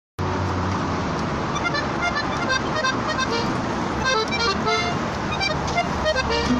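Steady road-traffic noise with an accordion playing a quick string of short single notes, beginning about a second and a half in.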